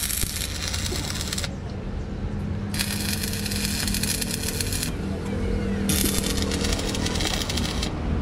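Electric arc welding on a truck's rear axle spindle: three runs of crackling and sizzling, each about one and a half to two seconds long, with short pauses between them, over a steady low hum.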